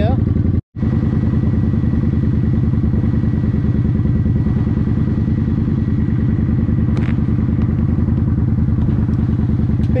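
Motorcycle engine idling at a standstill, a loud, steady and evenly pulsing idle. The sound cuts out for a moment just under a second in.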